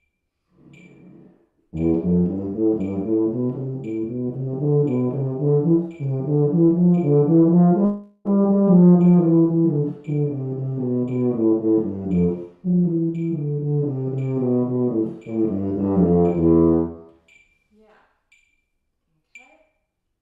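Tuba playing a run of sixteenth notes at a slowed practice tempo, each note even and full in tone, against a metronome clicking a little faster than once a second. The playing starts about two seconds in, breaks twice briefly for breath, and stops a few seconds before the end, while the metronome keeps clicking.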